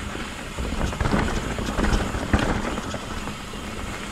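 Yeti SB150 full-suspension mountain bike descending a rocky, rooty dirt trail at speed: tyre noise over the ground with frequent knocks and rattles from the bike as it hits roots and rocks, and wind rumbling on the microphone.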